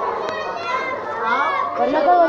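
Many children's voices talking and calling out over one another at once.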